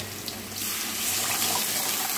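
Thinned curd being poured into a pan of hot frying oil. About half a second in, the frying sizzle swells into a louder, steady rushing hiss as the liquid pours in and hits the oil.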